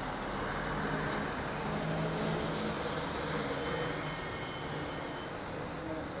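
Street traffic noise with motor-vehicle engine hum, swelling slightly a second or two in as a vehicle passes.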